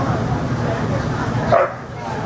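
A dog barks once, loudly, about one and a half seconds in, over a steady background of chatter and hall hum.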